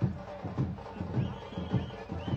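Drumming with heavy low beats, about four a second, and a faint high rising-and-falling whistle-like tone near the end.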